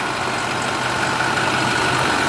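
International MaxxForce 7 V8 diesel engine idling steadily and quietly, a constant low hum with a steady high whine over it.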